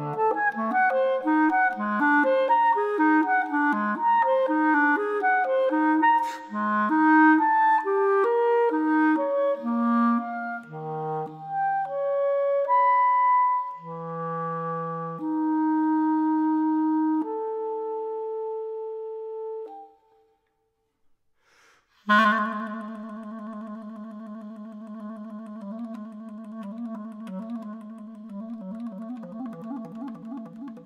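Clarinet playing a contemporary concert piece: a stream of quick notes slows into long held notes, breaks off into a short silence about twenty seconds in, then comes back with a sharp attack and a sustained, wavering low note.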